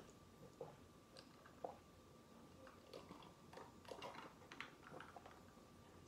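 A person drinking from a glass and swallowing: faint mouth and swallowing sounds, a scatter of small soft clicks over near silence.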